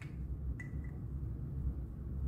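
Quiet room tone with a steady low hum, and a single small click about half a second in as a Sharpie marker's cap is pulled off.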